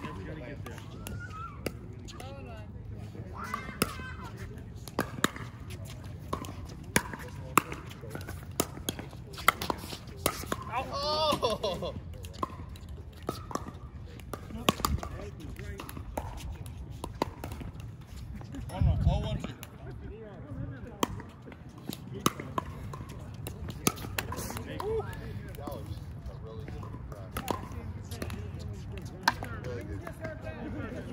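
Pickleball paddles striking a plastic ball and the ball bouncing on the hard court: sharp, irregularly spaced pops, with players' voices in the background and a short low rumble about two-thirds of the way in.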